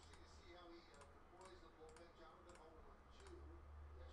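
Near silence with faint, scattered clicks of a computer mouse and keyboard, over a low hum.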